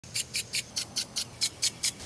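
Gardena Pulse impact-type rotary sprinkler running, its spray pulsing in a quick, even ticking of about five sharp ticks a second.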